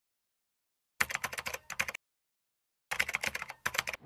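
Keyboard-typing sound effect in an animated outro: two bursts of rapid clicks, each about a second long, the first about a second in and the second near the end.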